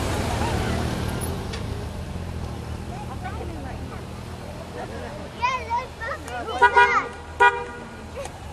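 Honda Gold Wing GL1800 flat-six engines running in a low rumble that fades as the motorcycles ride off. From about five and a half seconds, several short, loud pitched sounds stand out over the rumble, the last one held flat near the end.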